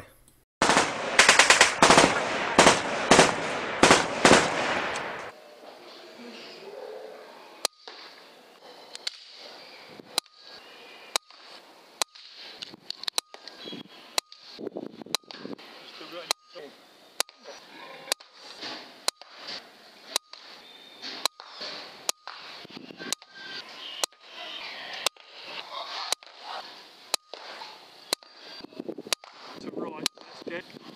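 A loud machine-gun burst sound effect for about the first five seconds, then a quick run of short air rifle shots, each a sharp crack, coming roughly once a second in quick succession.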